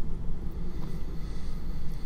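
A steady low rumble, like distant engine noise, with a few faint high-pitched glides in the middle.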